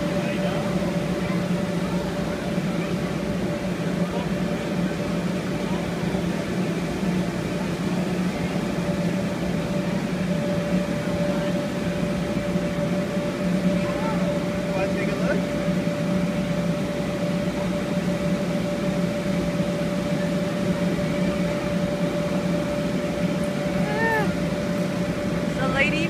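Electric inflation blower of a bounce house running, a steady motor drone with an even hum.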